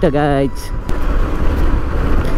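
Wind rushing over the microphone on a moving 150 cc motorcycle, a dense low rumble mixed with road and engine noise, after a few spoken words end about half a second in.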